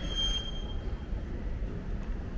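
Steady low rumble of indoor background noise, with a short, steady high-pitched squeal in the first second that then stops.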